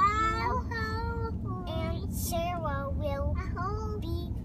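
A young child's high-pitched, sing-song voice, wordless or unclear, over the steady low rumble of road noise inside a moving car.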